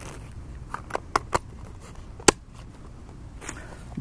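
Sharp clicks of hard plastic as a small camping stove is packed into its orange plastic case. There are several quick clicks, then the loudest single click a little past halfway.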